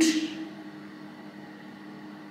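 Bathroom extractor fan running with a steady low hum.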